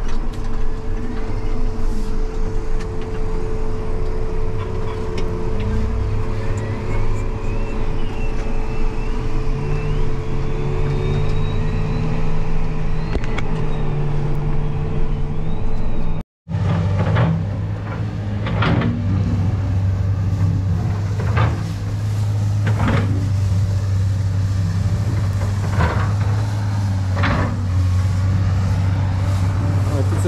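Tractor engine running steadily under way, with a faint wavering whine over it in the first half. After a short break about halfway, the engine drone goes on with sharp knocks or clanks every second or two.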